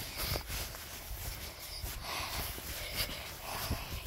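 Footsteps brushing through tall grass: irregular soft swishes and taps.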